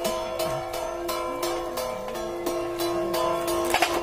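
Music: several held steady tones over a regular percussion beat of about three strokes a second, with a brief sharp clatter near the end.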